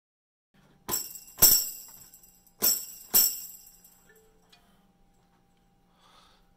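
An LP Jam Tamb, a mounted headless tambourine, struck four times in two pairs, each hit a bright jingle that rings out briefly.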